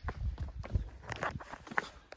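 Footsteps going down stone steps: an irregular run of short scuffs and thuds.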